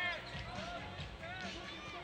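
A basketball being dribbled on a hardwood court, heard faintly under steady arena background noise, with a few short higher-pitched squeaks or calls from the court.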